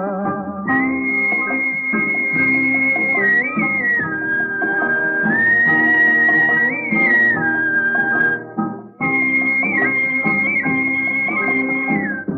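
Instrumental interlude of an old Hindi film song. A high, pure melody line of long held notes with small slides between them plays over steady chordal accompaniment, starting as the singing voice stops in the first second and breaking off briefly at about eight and a half seconds.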